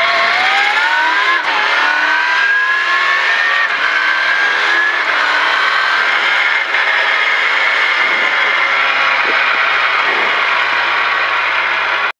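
Rally car engine heard from inside the cabin, accelerating hard: the pitch climbs, drops at an upshift about a second and a half in, and climbs again to a second shift near four seconds. It then holds a high, nearly steady note that slowly sags, over constant road and tyre noise.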